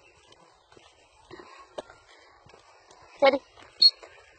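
Faint footsteps and rustling on a dirt path, with a few light clicks.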